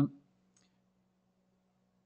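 The tail of a man's drawn-out "uh", then near silence with a faint steady low hum.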